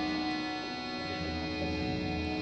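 Harmonium and drone holding steady sustained notes in Raag Bihag, between vocal phrases of a Hindustani classical performance.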